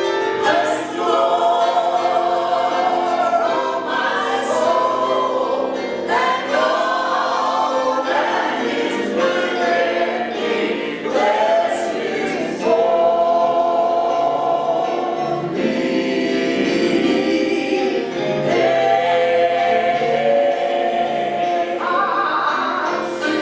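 Gospel praise-and-worship singing: a man sings into a microphone while a group of voices sings along with sustained notes.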